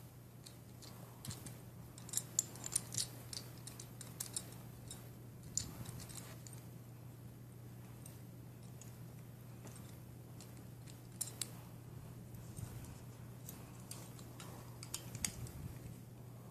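Faint, scattered clicks and ticks of a Beyblade spinning top's plastic and metal parts being handled and tightened together, in a few short clusters, over a steady low hum.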